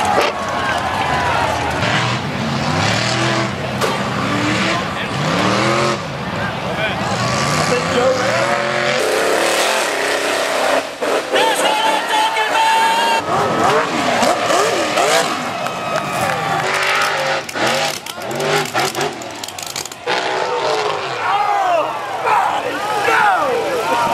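Off-road buggy and truck engines revving hard, pitch rising and falling with the throttle, mixed with spectators shouting. The sound changes abruptly several times.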